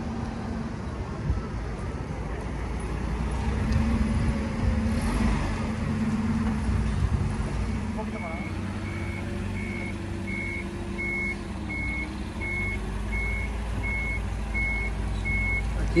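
Toyota forklift's engine running, its pitch rising and falling as it manoeuvres. About halfway through, its warning beeper starts, beeping steadily a little faster than once a second.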